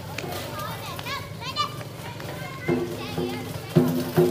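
Children's voices chattering and calling out around a lion dance, with the troupe's percussion struck twice near the end, each stroke ringing briefly.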